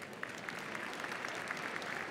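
Audience applauding: steady clapping of many hands that swells in the first half second.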